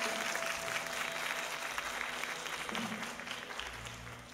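Audience applauding in a hall after a rock band's song ends, with a faint steady amp tone ringing under it for about the first second and a half and a few low bass notes near the end.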